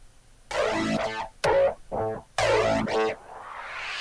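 Piano intro of a karaoke backing track: a run of short struck chords, then a rising swell leading into the full band.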